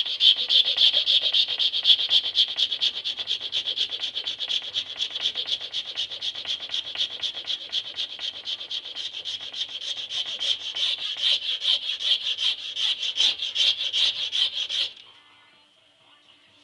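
Hand file rasping across a workpiece clamped in a bench vise in quick, even back-and-forth strokes, several a second, then stopping abruptly near the end.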